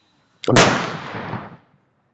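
A single sudden loud burst of noise about half a second in, fading away over about a second.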